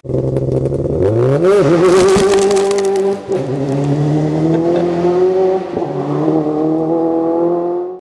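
Car engine sound effect under a logo animation: the engine revs up about a second in, then runs steadily at high revs, with a short hiss near two seconds and two brief dips in pitch.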